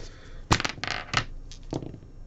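Irregular sharp clicks and clacks from things being handled on a desk, about six in all, the loudest about half a second in, with light rustling between them.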